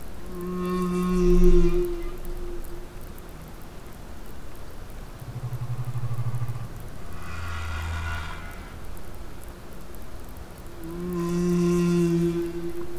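Humpback whale song: a series of long pitched moans with many overtones, a low pulsed grunt and a deeper moan in the middle, and the opening moan repeated near the end.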